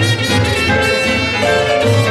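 Traditional New Orleans-style jazz band playing live: trumpet and a reed horn carrying the tune over piano, guitar, string bass and drums, with a steady bass pulse underneath.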